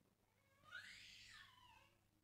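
Near silence with room tone, broken by one faint, short call about a second in that rises and then falls in pitch.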